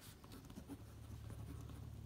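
Pen writing on lined paper: faint, irregular scratching of the tip as words are written out by hand.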